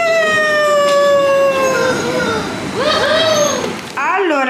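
A high-pitched human voice whooping: one long held cry, about two seconds, sliding slowly down in pitch, then a couple of short rising-and-falling cries near the end.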